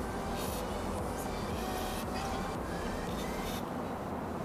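A few short hisses of a WD-40 aerosol can spraying penetrating oil onto suspension bolts, over a steady low background hum.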